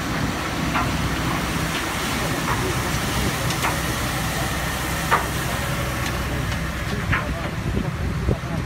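Small diamond wash plant running: a steady engine drone under a noisy wash of water and gravel, with scattered sharp knocks as stones strike the metal trommel screen and chute.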